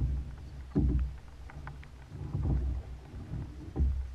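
Kayak paddle strokes in river water, a dip and pull about every second and a half, each with a low rumble, and small drips and ticks from the blades between strokes.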